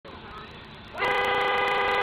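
A vehicle horn sounds one long, steady blast starting about a second in, a warning as a car passes the stopped school bus while a child crosses in front of it. Faint road noise comes before the horn.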